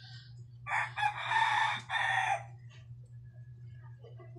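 A rooster crowing once, a call of about a second and a half with a short break near its end, over a steady low hum.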